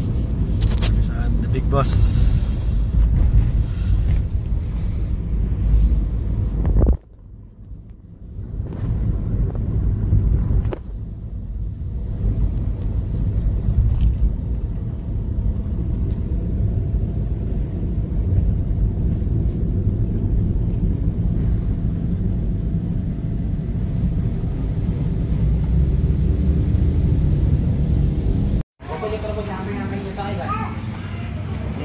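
Steady low rumble of road and engine noise from inside a moving car. It drops away sharply about seven seconds in, builds back up, then cuts off abruptly near the end.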